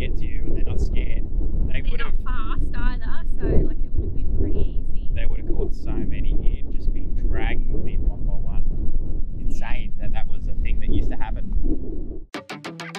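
Wind buffeting the microphone: a steady, heavy low rumble under people talking.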